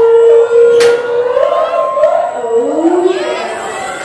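Several people whooping and yelling in long, wavering held notes, one voice high and a lower one gliding upward about two and a half seconds in, as a flying roller coaster train moves through the station. A single sharp clack comes just under a second in.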